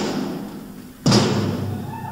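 Drums struck one at a time in a drum solo: a drum rings out and fades from a strike just before the start, then another loud strike about a second in rings on with a low, tom-like tone.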